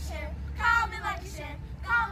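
Children's high voices singing in short phrases, about three in two seconds, over a steady low hum.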